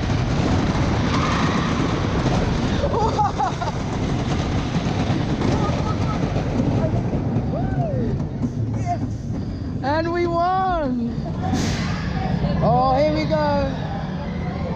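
Wooden roller coaster train rumbling along its track at the end of the ride, with voices calling out twice near the end.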